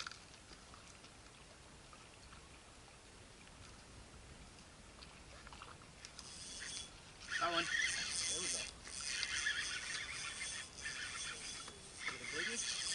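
Shimano Nasci 2500 spinning reel being cranked while a hooked fish is played: a steady gear whine from about six seconds in, broken by short pauses in the winding. Short vocal exclamations come over it a couple of times.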